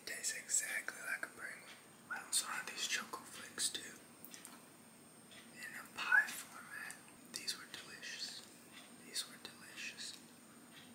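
A man whispering close to the microphone, breathy and hushed, in short phrases.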